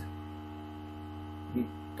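Steady electrical mains hum, an even buzz made of several fixed tones, with one short spoken word near the end.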